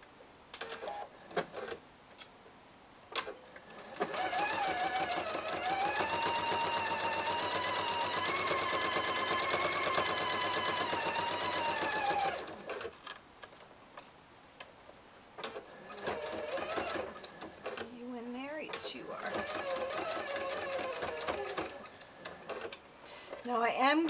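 Electric sewing machine stitching a fabric strap: a motor whine over rapid needle strokes runs steadily for about eight seconds, stops, then runs again more briefly with its pitch rising and falling as the speed changes. The stitching runs down the strap and back over the tucked elastic end. A few handling clicks come before the first run.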